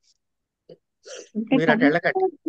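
A pause with only a brief faint vocal sound, then a person starts speaking about a second in.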